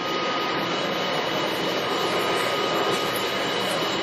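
Steady whir of running machinery, even throughout, with two faint high whining tones held over it.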